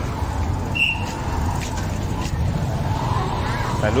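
Outdoor urban ambience with a steady low rumble of traffic. A short high squeak comes about a second in.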